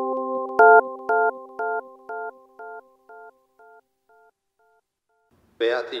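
Electronic logo jingle: a held synthesizer chord fading out, then a short chord repeated about twice a second, each repeat quieter, echoing away to nothing a little past the middle.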